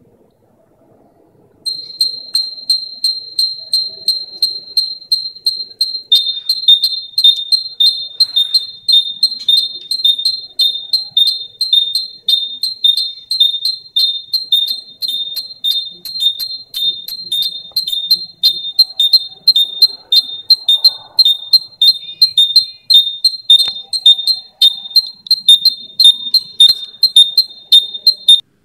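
Piezo buzzer alarm sounding a high-pitched electronic beep several times a second, starting about two seconds in, with a second, slightly lower tone joining about six seconds in. It is the robot's fire alert: it has sensed fire for too long without being able to put it out.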